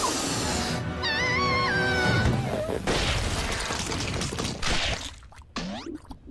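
Cartoon sound effects of giant bubble-gum bubbles bursting: a sudden loud burst at the start, then noisy crashing and splattering with a brief wobbling whistle-like tone about a second in, over music.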